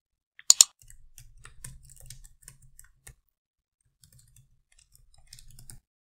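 Typing on a computer keyboard in irregular runs of light key clicks, with a sharp double click about half a second in and a short pause in the middle.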